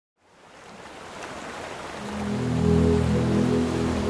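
Ocean surf fading in from silence, joined about halfway through by a sustained low chord of background music.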